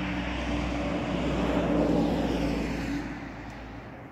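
A motor vehicle passing by: a steady engine hum and tyre noise that grows louder to a peak about halfway through, then fades away.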